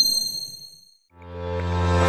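A bright, high-pitched ding sound effect for a logo reveal, ringing and fading out over about a second. Electronic background music with a steady bass fades in just after.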